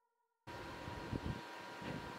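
Near silence for about half a second, then a steady background hiss with a faint steady whine starts abruptly, with a few soft low bumps from handling the cup of resin.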